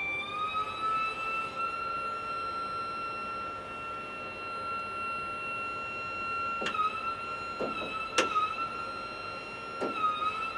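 ATR 72 electric hydraulic pump (blue system) running with a steady high-pitched whine, rising slightly in pitch in the first second, as it pressurises the system to release the propeller brake. Two sharp clicks about seven and eight seconds in, each with a brief dip in the whine.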